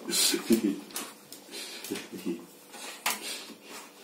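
A small wet dog rolling and rubbing itself on a towel laid on a tile floor, drying itself after a bath: irregular fabric rustling and scuffing with a few sharp knocks and clicks on the tiles.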